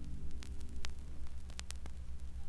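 Vinyl LP surface noise in a quiet stretch of groove: scattered clicks and pops over a steady low hum. Just at the start, the last harp notes die away.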